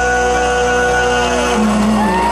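Live rock band's amplified guitars holding sustained notes, with one held note sliding down in pitch about a second and a half in, as the song closes.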